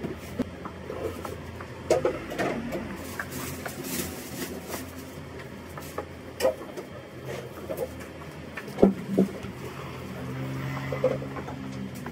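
Flower baskets and buckets being handled and set down on a hard floor: scattered knocks, clunks and rustles, with the sharpest knock about nine seconds in. A low hum rises and fades near the end.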